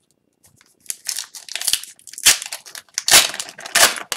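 Foil wrapper of an Upper Deck hockey card pack crinkling and tearing as it is opened by hand: a run of crackling starting about a second in, loudest in the second half.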